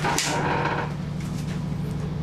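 A glass shower-enclosure door in a chrome frame knocks and slides open, a sharp clack followed by about a second of scraping. A steady low hum runs underneath.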